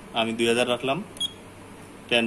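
A man speaks briefly, then there is a single short, high electronic beep from the Juki LK-1900A bartack machine's control panel as one of its keys is pressed.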